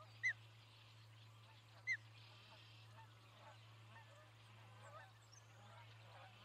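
Two short, loud bird calls about one and a half seconds apart, each a quick arched note, over faint scattered chirping of small birds and a steady low hum.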